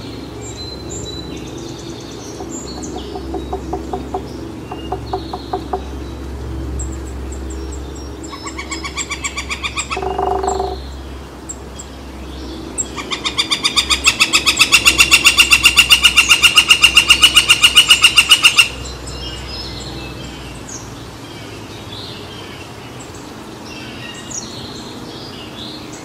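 A woodpecker giving a long, fast, even series of loud strokes lasting about six seconds, after a shorter, quieter series about eight seconds in. Small birds chirp around it.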